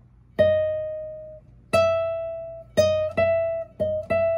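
Nylon-string classical guitar played as five single plucked notes, each ringing and fading before the next, high on the neck in an E minor scale with an added D sharp.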